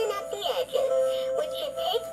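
Animated singing plush bear toy, Holly the recipe bear, playing its song: a sung melody over a backing tune of held notes, while its mouth and spoon arm move.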